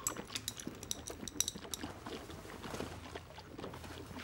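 A mouthful of liquid being swished around in the mouth as a rinse: a run of small wet clicks and squelches over the first two seconds or so.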